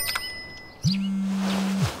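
A phone vibrating as a morning alarm: a low buzz lasting about a second that starts about a second in, part of an on-off pattern. A few short high chirps come at the very start.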